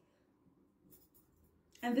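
Near silence, room tone in a small room, with a few faint soft rustling ticks about a second in. A woman's voice begins just before the end.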